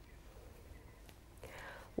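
Near silence between spoken sentences: faint room tone with a low hum, and a soft breath-like noise near the end.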